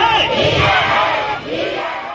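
A crowd of protesters shouting slogans together, many voices blending into one loud mass that eases off somewhat in the second half.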